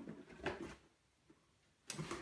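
Cardboard scraping and rustling as a cardboard shoebox is pulled out of a cardboard shipping carton, in a short burst about half a second in, then almost quiet.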